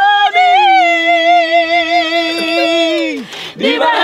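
A group of voices singing a cappella. A long held note ends in a falling slide about three seconds in, and the singing starts again near the end.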